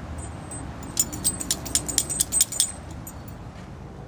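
A dog's metal collar tag jingling in a quick run of about a dozen clinks lasting under two seconds, over a steady low outdoor rumble.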